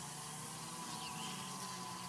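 Quiet outdoor background with a faint steady low hum and no distinct sound events.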